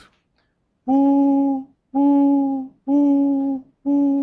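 A man humming one steady note four times, each under a second long with short silences between. It imitates the alternating maxima and near-silent minima of loudness heard when walking through a standing sound wave.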